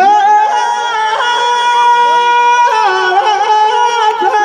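A man's voice singing Teja Gayan, a Rajasthani folk devotional song to Tejaji, into a microphone: a rising slide into long, high held notes, with pitch bends and a shift to a new note about two and a half seconds in.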